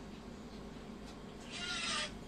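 A brief animal call of about half a second near the end, over the steady hum and trickle of aquarium filters.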